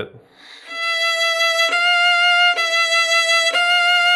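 A violin holding one high note, bowed in short strokes near the tip with three quick bow changes about a second apart, each leaving only a slight seam in the tone. This is practice for bow changes that carry on without an accent.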